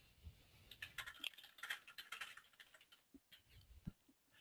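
Faint computer keyboard typing: a quick run of keystrokes as a short phrase is typed, then a single click near the end.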